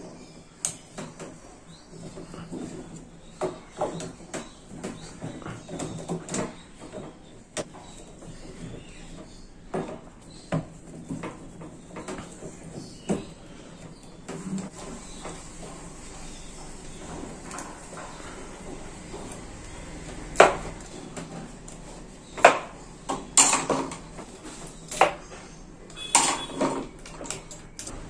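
Irregular small clicks and knocks of pliers and metal parts being handled on a wall fan's motor, with a few sharper knocks in the second half.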